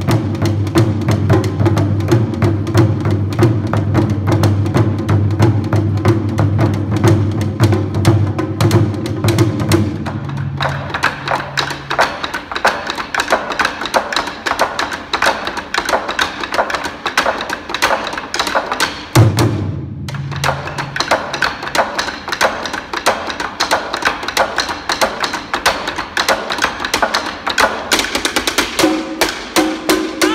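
Japanese taiko drums (wadaiko) played together by an ensemble with sticks: a fast, continuous run of strokes. A deep, sustained low rumble sits under the strokes for the first third and drops out. The playing breaks off briefly about two-thirds of the way through and then resumes.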